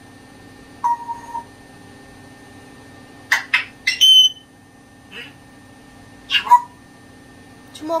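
African grey parrot giving a few short, separate vocal sounds with pauses between them: a brief whistled note about a second in, a couple of sharp clicks and then a high whistle a little before the middle, and another short call later on.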